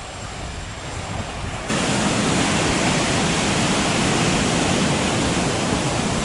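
Outdoor background hiss. Under two seconds in, a loud, steady rushing noise cuts in abruptly and holds evenly to the end.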